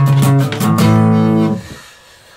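Acoustic guitar strings plucked and left ringing over one another. One stroke comes at the start and another just over half a second in, and the notes die away after about a second and a half. The unmuted strings let the sound build up.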